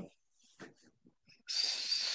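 A pause in the talk, then near the end a hiss of under a second, like a drawn-out 's' or a breath through the teeth, as a man starts on a hard-to-say name.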